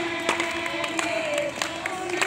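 A group of women singing a Hindi devotional song about Radha and Krishna (a bhajan) together in one melody, keeping time with steady hand claps, about three to four a second.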